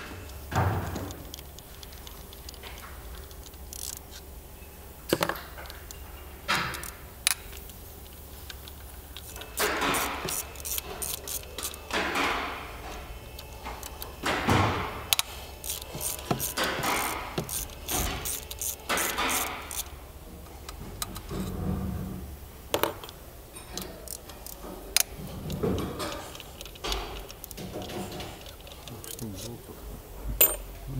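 Hand ratchet and socket loosening intake manifold bolts: repeated short runs of ratchet clicking and metal tools clinking, with a low steady hum underneath.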